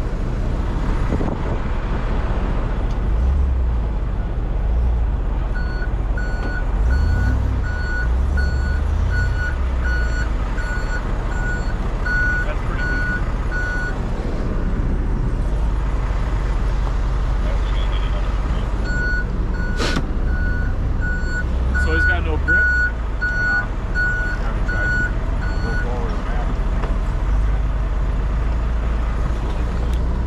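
A vehicle's backup alarm beeping steadily, about one and a half beeps a second, in two runs of roughly eight and seven seconds. Under it a truck engine idles with a low rumble, heard from inside the cab, and there is one sharp click about twenty seconds in.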